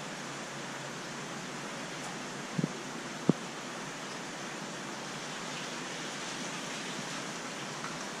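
Steady hiss of a fish room full of large running aquariums, the noise of circulating water and filtration equipment, with two short knocks about two and a half and three and a half seconds in.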